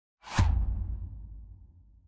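Whoosh-and-boom sound effect for an animated logo intro: a sudden swoosh about a quarter second in, trailing into a low rumble that fades away over about a second and a half.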